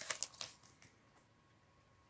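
Foil wrapper of a hockey card pack crinkling in a few short crackles as the cards are pulled out of it, over in about half a second, then near silence.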